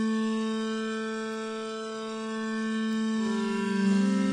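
Logic Pro X's Sculpture synthesizer on its 'Ambient Slow Bow' patch holding a sustained bowed-style note that slowly swells and fades, with a lower note joining about three seconds in. A Modulator MIDI effect is moving Sculpture's variation, adding a little organic variance to the tone.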